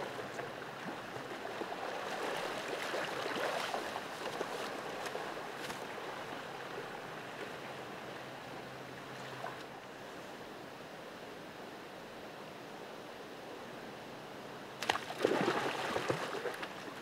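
Creek water running steadily, with a short, louder burst of noise near the end.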